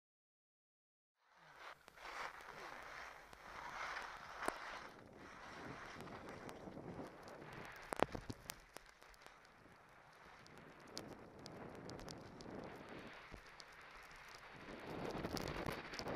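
Skis sliding and scraping over snow with wind rushing over a helmet-mounted camera's microphone, starting about a second in as a steady hiss with a few sharp clicks and knocks, growing louder near the end.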